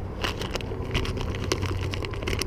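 Plastic soft-bait package (Berkley PowerBait bag) crinkling as it is handled, a run of small irregular crackles over a low steady hum.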